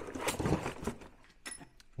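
Handling noise of metal parts: a rustling clatter for about a second, then a light metallic clink about one and a half seconds in.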